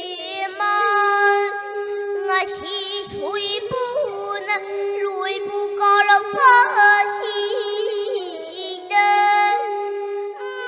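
A young girl singing solo through a headset microphone, holding long notes with vibrato and sliding between pitches, over a steady low note held underneath.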